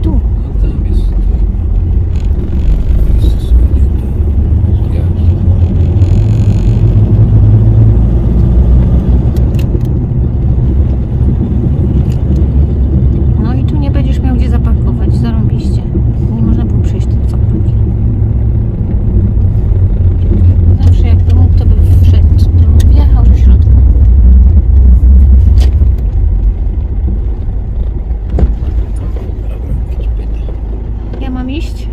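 Toyota Hilux driving slowly, heard from inside the cab: a steady low engine and road rumble that swells a little around the middle and towards the end.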